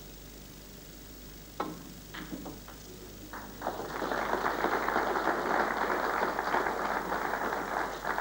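A sharp click of a snooker cue ball being struck, then a few scattered claps that build into steady audience applause for about four seconds.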